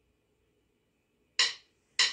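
Near silence, then about one and a half seconds in a single sharp acoustic guitar strum: the first beat of an acoustic pop backing track starting up.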